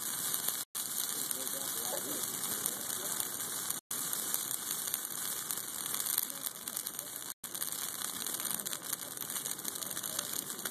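Christmas tree and wooden pallets burning in a large bonfire: a steady rush of flames full of fine crackling and popping. The sound cuts out for an instant three times.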